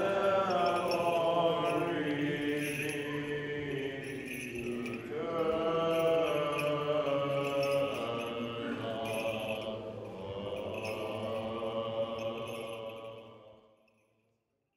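Orthodox liturgical chant: voices holding long, slowly moving notes over a steady low held tone, fading out near the end.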